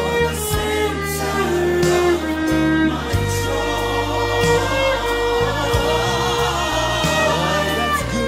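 Electric violin bowing a slow melody of long held notes over a gospel backing track with bass, drums and singing.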